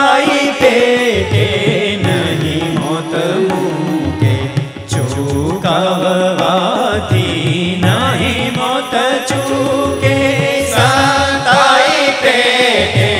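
Indian devotional song: male voices singing over bowed violin, electronic keyboard and tabla, with a plucked long-necked drone lute.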